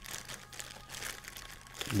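A clear plastic bag crinkling softly as it is handled, in small irregular crackles.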